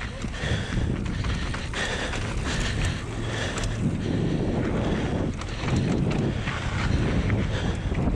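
Mountain bike descending a dry dirt trail at speed: wind rushing over the camera microphone, tyres running on loose dirt, and scattered knocks and rattles from the bike over bumps.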